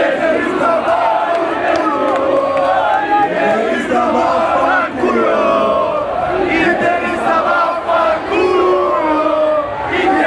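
A large crowd of football supporters chanting and shouting, many voices at once, loud and unbroken throughout.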